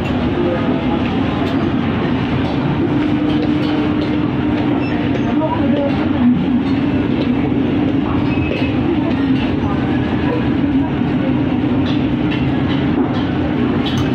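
Shopping-mall background: a steady, continuous hum with indistinct voices of shoppers mixed in, with no distinct events standing out.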